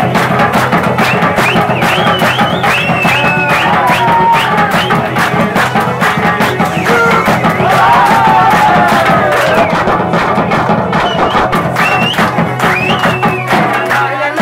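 Live instrumental folk music: a double-headed barrel drum beaten in a fast, steady rhythm with hand-clapping from the group, under a bending melody line.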